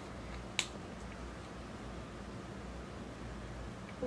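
Quiet room with one sharp click a little over half a second in, from handling a cosmetic tube and applicator while swatching.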